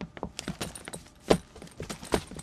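Footsteps of several people walking on a wooden floor, an irregular run of light clicks and knocks with some clinking, one knock louder than the rest a little past the middle.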